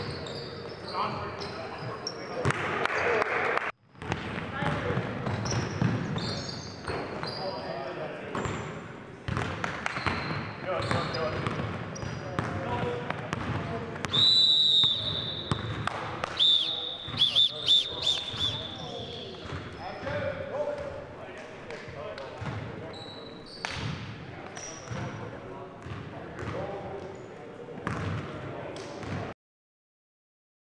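Basketball bouncing on a gym's hardwood floor with indistinct players' voices echoing in the hall, and sneakers squeaking on the court in the middle of the stretch, the loudest sounds here. The sound cuts out briefly about four seconds in.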